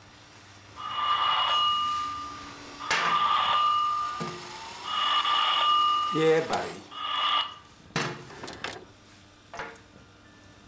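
A mobile phone ringing: four rings of an electronic ringtone held on two steady tones, each about a second long, the fourth cut short.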